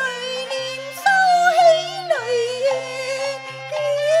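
Cantonese opera singing: a woman's voice drawing out a long, gliding, wavering melismatic phrase without clear words, over a traditional instrumental accompaniment of held notes.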